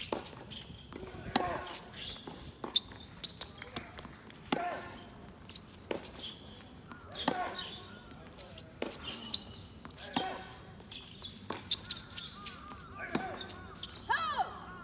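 Tennis rally: racket strikes and ball bounces as sharp knocks every one to three seconds, several of the strikes with a player's short grunt.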